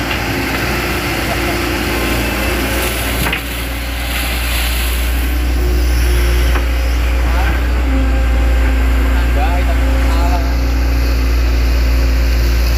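Hitachi Zaxis 110 excavator's diesel engine running steadily as the machine works in a muddy ditch, growing louder about four seconds in.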